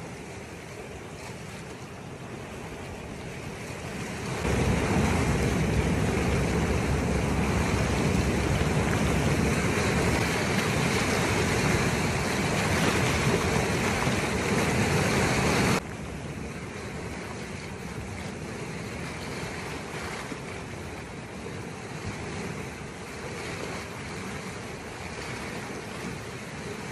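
A steady rushing noise of flash-flood water mixed with wind on the microphone. It swells about four seconds in and stays loud and rumbling for about eleven seconds. Then it cuts off suddenly to a quieter, steady rush.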